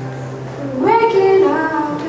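A woman singing live to her own ukulele accompaniment. Her voice comes in louder with a sung phrase about a second in, after a quieter held tone.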